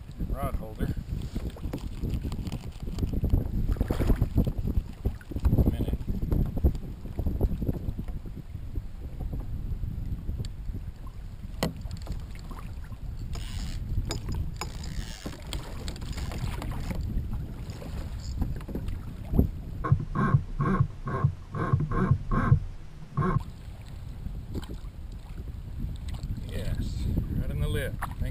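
Wind buffeting the microphone of a kayak-mounted camera on open sea, with water moving around the kayak. About two-thirds of the way in, a run of evenly spaced pulsing ticks, about two or three a second, lasts a few seconds.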